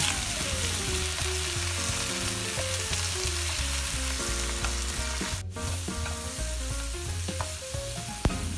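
Bok choy and chopped garlic sizzling steadily in butter and oil in a nonstick wok, stirred with a plastic spatula that scrapes and pushes the greens around the pan. The sizzle breaks off for an instant about five and a half seconds in.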